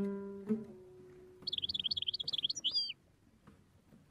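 Two plucked oud notes ring and die away in the first second, then a songbird's rapid, high twittering song runs for about a second and a half and stops, leaving a pause in the music.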